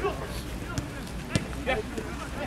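A football kicked twice, two sharp thuds about half a second apart, with a short shout of "ja" near the end.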